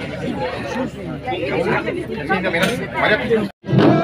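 Several people chattering and talking over one another in a crowded room; the sound cuts out suddenly for a moment near the end.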